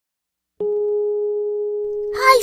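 A steady electronic tone starts abruptly about half a second in and holds at one unchanging pitch.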